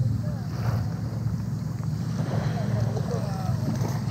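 Wind buffeting a wearable action camera's microphone: a steady low rumble, with faint wavering voices or calls above it.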